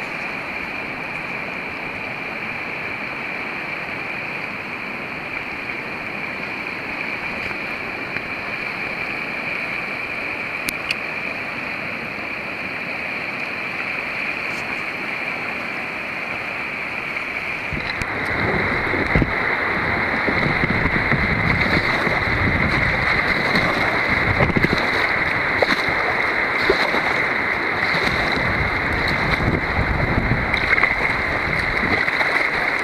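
Steady rushing of fast-flowing river water at a set of rapids. A little over halfway through it gets louder and rougher, with irregular low buffeting on the microphone.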